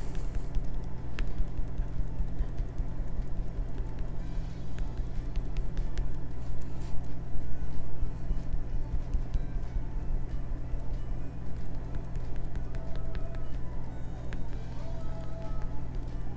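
Background music with a steady low bass line, under faint scattered taps of a foam stencil sponge dabbing paint onto a wood block.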